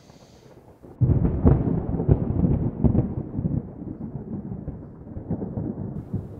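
A sudden loud low rumbling noise starts about a second in, with repeated knocks through it, and slowly eases off.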